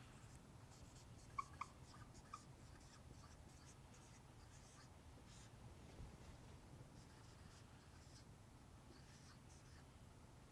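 Faint squeaks and scratches of a dry-erase marker writing on a whiteboard, in short strokes, with a few small clicks between one and two and a half seconds in.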